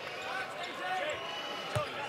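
A basketball bouncing on the hardwood court in a free-throw shooter's pre-shot dribble, with a clear thud near the end, over a murmur of arena crowd voices.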